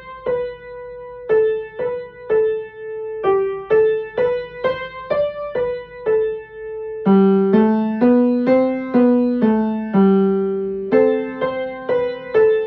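Upright piano playing a slow, simple melody one note at a time, about two notes a second. About seven seconds in, lower notes join the melody, so notes sound in pairs.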